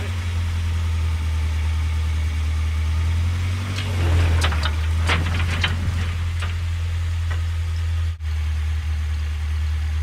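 Plow truck's engine running with a steady low hum, getting louder for a moment about four seconds in as it pulls on the homemade ladders in packed snow. A run of sharp clicks and crunches follows for a couple of seconds, and the sound drops out briefly just after eight seconds.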